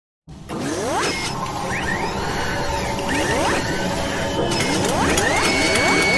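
Synthesized sound effects of an animated video intro: about five rising whooshing sweeps laid over a busy clatter of mechanical clicks and whirring. A steady high tone comes in near the end.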